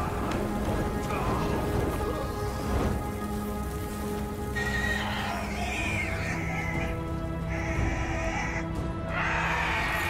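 Dragon shrieks over background music: several shrill, whinny-like cries of about a second each, coming in the second half.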